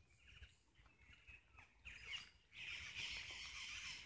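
Faint bird chirps, then a louder steady high hiss that sets in about two and a half seconds in.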